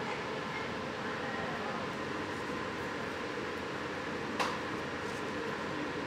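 Steady, even hum of air-handling equipment running in an enclosed hydroponic growing room. A single sharp click comes a little after four seconds in.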